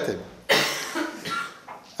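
A single cough about half a second in, followed by fainter throat noises.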